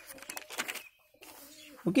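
Faint cooing of a dove in the background during a pause in speech.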